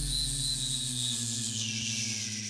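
The closing notes of a live electronic pop song dying away: a held low chord and a high synth tone slowly sliding down in pitch as the song ends.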